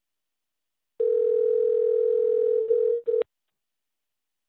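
Telephone ringback tone on a phone line: one steady tone about two seconds long, signalling an outgoing call ringing and not yet answered, with a short break near its end before it cuts off.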